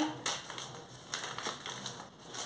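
Crinkling and crackling of a flour bag being handled as it is opened, in a few short irregular bursts.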